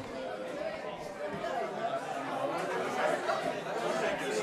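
Indistinct chatter of several people talking at once, no one voice standing out.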